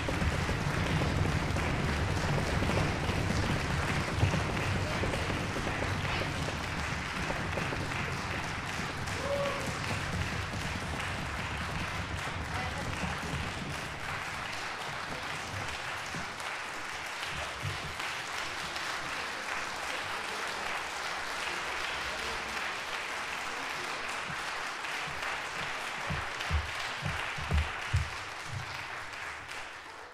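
Concert audience applauding steadily, with a few low thumps near the end before the sound fades out.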